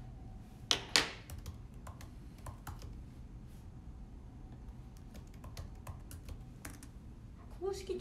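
Fingers tapping on and handling a smartphone held close to the microphone: scattered light clicks, like typing a search, with two louder knocks about a second in.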